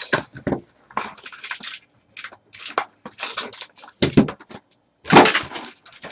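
A cardboard trading-card box being torn and pried open by hand, in irregular rips and scrapes, with a louder rustle of a foil card pack being pulled out and handled near the end.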